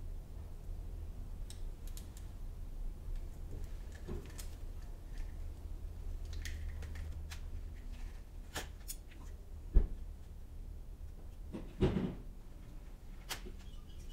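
Small scattered clicks and rustles of wires and a pair of cutters being handled inside a motorcycle's metal headlight bucket. A sharp click comes about ten seconds in and a duller knock about two seconds later, over a low steady hum.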